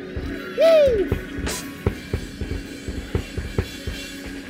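Drum kit playing irregular kick and snare hits over a held low note, the drummer answering the preacher's pauses. A single short shouted exclamation comes about half a second in.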